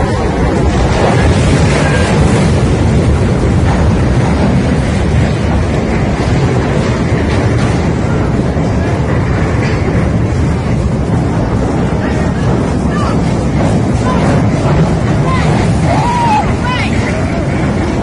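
Cruise ship colliding with a quay and a moored river boat, heard as a loud, continuous rumbling noise with wind buffeting the phone microphone. People's voices shout faintly through it.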